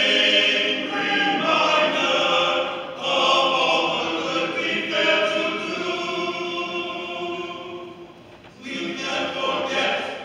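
Men's choir singing in close harmony, held notes in phrases that break off every couple of seconds; the sound thins briefly near the end before the voices come back in.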